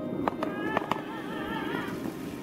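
Skateboard wheels rolling on a concrete path, clicking sharply over the joints about three times a second. The rolling and clicking stop about a second in, and a wavering melody follows.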